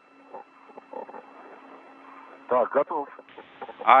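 Spacewalk radio channel: low hiss and a steady hum with faint voices, then a man's voice speaking over the radio link about two and a half seconds in.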